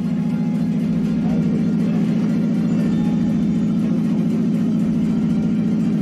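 A steady low hum with a fast, even flutter.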